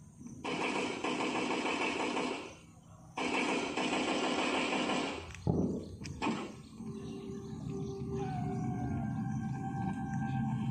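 A recorded backing track played for a mime act. Two harsh bursts of noise, each about two seconds long, start and stop abruptly. Two sudden hits with falling pitch follow, and then soft held tones of ambient music begin.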